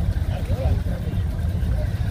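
Steady low rumble of a 1971–72 Chevelle SS's 350 V8 idling as the car creeps forward, with faint voices in the background.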